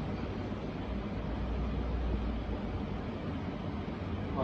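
Steady background hiss with a low rumble underneath, a little stronger in the middle; no speech.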